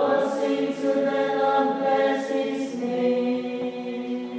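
Choir of women's voices singing a hymn a cappella in long, held chords, moving to a new chord about three quarters of the way through.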